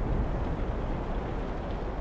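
A steady low rumbling noise with no distinct events, the kind of ambient drone laid under a film's pictures.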